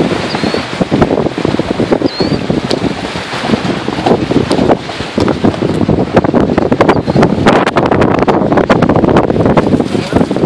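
Off-road vehicle driving over a loose rocky lakebed: a steady running noise with constant rattling and clicking from the stones and the vehicle jolting over them, with wind buffeting the microphone.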